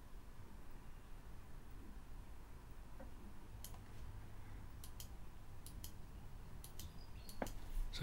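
Faint computer mouse clicks, about a dozen of them in quick pairs, from about halfway in, over quiet room tone.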